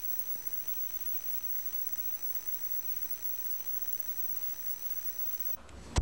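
Steady tape hiss with faint, thin steady electronic tones and a low hum, and no room sound: the audio track has dropped out. Near the end the hiss cuts off and a sharp click marks the sound cutting back in.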